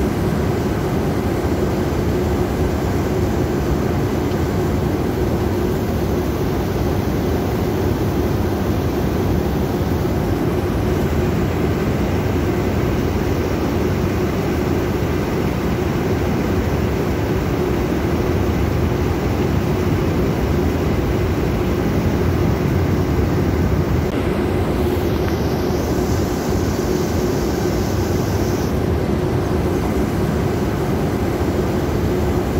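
Heavy floodwater rushing down a dam spillway with all its crest gates open and crashing into the river below: a loud, steady rush of water.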